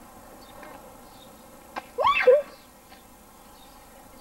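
A child's brief high-pitched cry about halfway through, rising in pitch, with a sharp click just before it; otherwise only a faint steady outdoor background.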